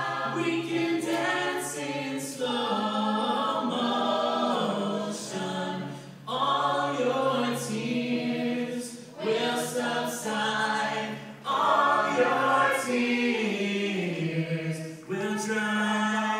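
Mixed male and female a cappella chorus singing in harmony, unaccompanied, with short breaks between phrases.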